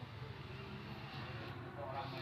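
Quiet room tone: a steady low hum with faint, indistinct voices in the background.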